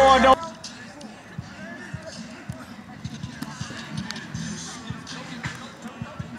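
Music cuts off just after the start, leaving football practice-field sound: distant voices and scattered dull thumps at irregular intervals.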